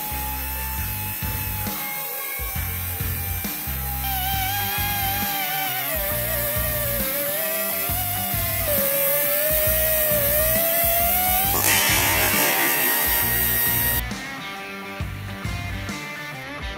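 Background music with a steady bass beat over the whine of a Promotech PRO-50/2 ATEX pneumatic magnetic drill cutting steel plate with an annular cutter. The whine wavers up and down in pitch as the cutter works through the steel.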